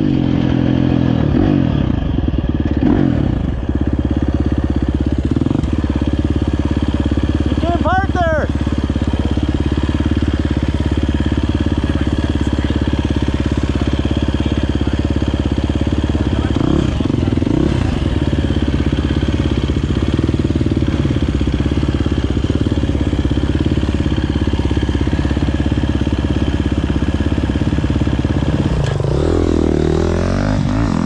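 GasGas EC350F's 350 cc single-cylinder four-stroke engine running as the bike slows in the first few seconds, then idling steadily at a standstill.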